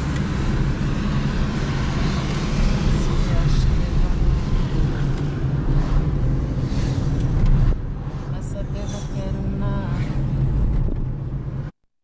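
Car cabin noise while driving in city traffic: a steady low engine and road rumble heard from inside the car. The sound cuts off abruptly near the end.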